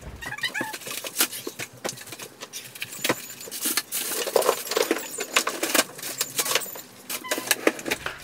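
Plastic packaging rustling, with a run of clicks and knocks as frozen food is packed into a freezer drawer.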